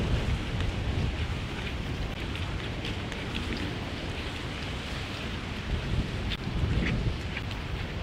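Steady rain falling on wet pavement and standing water, with a low rumble underneath and a few faint scattered ticks of drops.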